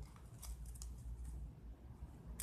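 Shiny gift ribbon rustling and crackling faintly as fingers thread and pull it through the folded petals, with a few short crinkles in the first second.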